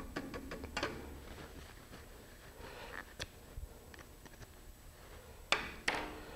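Light clicks and taps of a paintbrush being rinsed against a small plastic cup of water, with a sharper knock near the end as an item is set down on the table.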